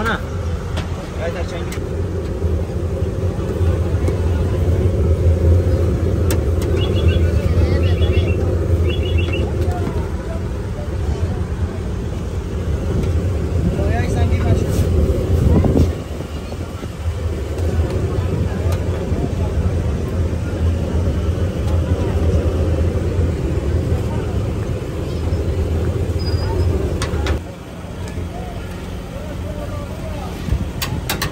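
Busy street ambience: a steady low engine-like rumble from traffic, with voices and a few sharp clicks. The rumble drops away abruptly near the end.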